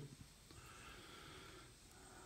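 Near silence: faint background hiss, with a faint steady high tone for about a second in the middle.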